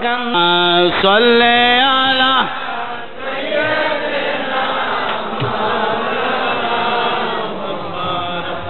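A man's voice chanting in long, melodic held notes over a loudspeaker for about two seconds, then a dense mass of many voices from the gathering chanting together.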